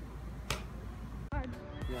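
A single sharp click over a low steady hum; about two-thirds of the way in, music with voices starts abruptly.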